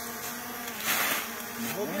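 Small quadcopter drone's propellers buzzing steadily in flight, with a short hiss about a second in.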